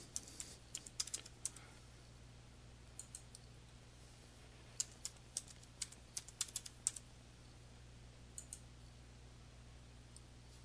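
Faint computer keyboard keystrokes in several short runs as dates are typed.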